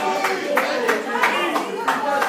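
People clapping hands in a steady beat, about two claps a second, with voices calling out over the clapping.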